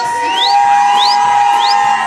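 Tejano conjunto band playing live: the button accordion holds one long note over bass and a steady drum beat. Three quick rising whistles come about half a second apart over the music.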